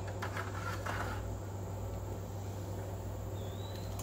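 Steady low hum over a quiet outdoor background, with a few light metal clinks in the first second as steaks are moved from a metal pan onto the grill with a fork. A short high chirp comes near the end.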